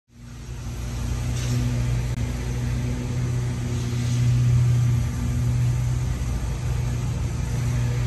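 A steady low mechanical hum, like a vehicle engine running nearby, fading in over the first second and swelling slightly about halfway through.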